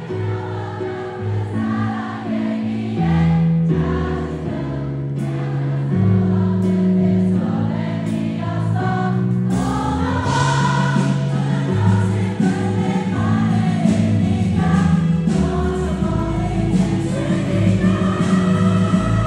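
Live band music: a male singer sings over acoustic guitar and drums, with a full, choir-like wash of many voices singing along.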